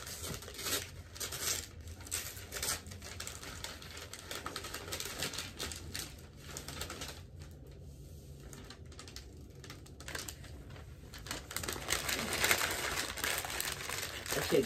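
Paper crinkling and tearing as a wrapped present is unwrapped, in irregular bursts that thin out in the middle and grow busier near the end.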